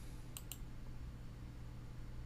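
A computer mouse click, press and release in quick succession, a little under half a second in, over a faint steady low hum.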